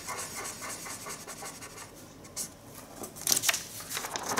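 Pink marker pen scratching across a sheet of paper on a wooden table in a run of quick short strokes, then the paper rustling as it is picked up near the end.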